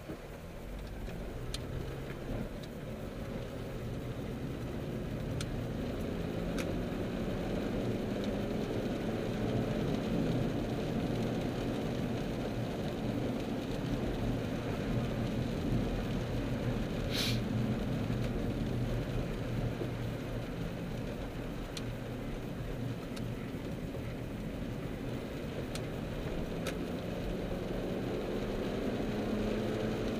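Car engine and tyre noise on a wet road heard inside the cabin, the engine note rising as the car accelerates over the first several seconds, then running steadily. A few faint clicks, with one sharper click a little past the middle.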